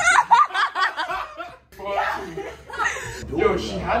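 Several young people laughing together, with giggles and snickers, then a short lull before more laughing voices.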